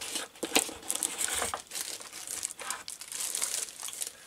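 Clear plastic film crinkling around a metal plaque as it is handled and lifted out of its box, with a couple of light knocks in the first second and a half.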